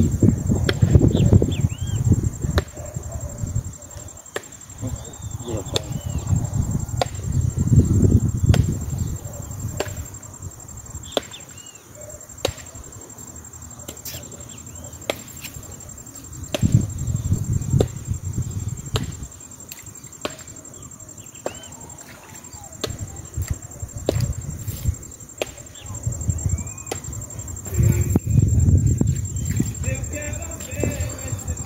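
Wind buffeting the microphone in gusts that swell and die away every several seconds, with scattered sharp clicks and a faint steady high whine.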